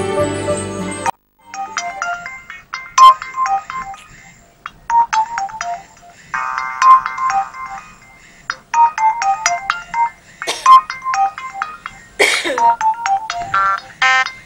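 Mobile phone ringtone playing a short melody of high beeping notes over and over, with short pauses between repeats. A background music score cuts off abruptly about a second in, and two brief noisy whooshes come near the end.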